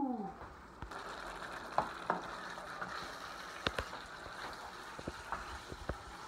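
Beef and broccoli sizzling in an electric skillet: a steady frying sizzle with scattered clicks.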